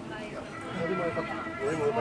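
Coffee-shop background of voices talking indistinctly, with a faint steady high tone running underneath.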